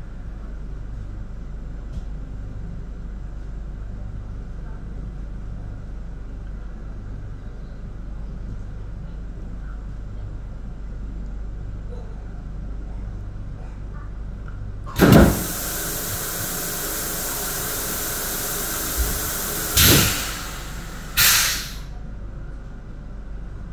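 Steady low electrical hum of a stationary electric train. About fifteen seconds in, a sudden loud hiss starts and runs for several seconds, with louder surges near the end.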